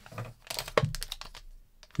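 A quick run of small clicks and taps from hands handling a hard black trading-card box and lifting a foil card pack out of it.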